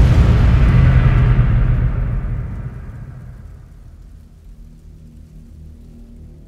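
Cinematic logo-intro boom: a deep impact rumble that fades away over the first three seconds, leaving a quiet, steady low music drone.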